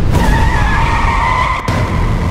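Car tyres squealing in a skid over a low rumble, the squeal wavering for about a second and a half before cutting off abruptly.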